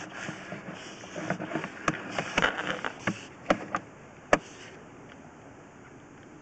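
Sewer inspection camera head knocking and scraping against the pipe as it is pulled back out through the cleanout: a run of sharp knocks, the loudest about four seconds in, over a steady hiss.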